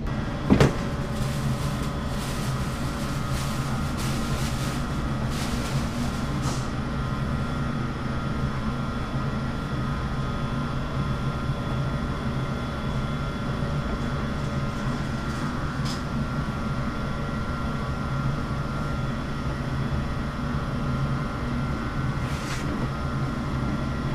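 Steady machine hum of commercial kitchen equipment (refrigeration or ventilation), with a sharp knock about half a second in and a few light clicks over the next few seconds.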